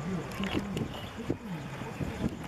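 Indistinct voices of several people talking, with a few light knocks in between.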